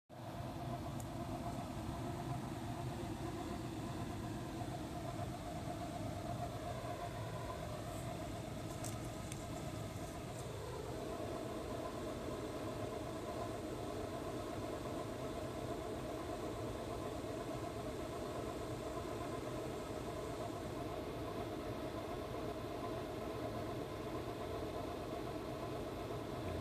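A steady engine-like hum, as of a motor running at idle, with its tone shifting about ten seconds in.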